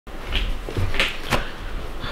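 Three short knocks with rustling as a man sits down on a couch and lays a padded envelope on the ottoman.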